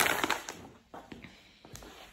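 Plastic bags of cat food rustling as they are handled, dying away after about half a second, followed by a few faint taps.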